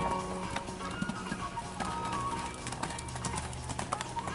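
Background music with a horse cantering on a sand arena, its hoofbeats heard as a run of soft clicks that grow clearer in the second half as the horse passes close.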